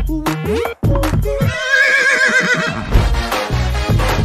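A horse whinnying once, a quavering call of about a second and a half, laid over dance music with a steady beat.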